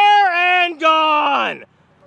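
A man's voice yelling two long drawn-out shouts, each sliding down in pitch at its end, the second ending a little past halfway.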